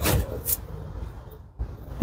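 Handling noise as a phone camera is moved around a car's open door and seat: a few soft knocks and rustles, one at the start and another about half a second in, over a faint low rumble.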